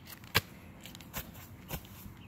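A few short, sharp taps and scuffs of sneakers on concrete as a boy scrambles up over a low concrete ledge onto the grass. The loudest tap comes about a third of a second in, with lighter ones near the middle and later on.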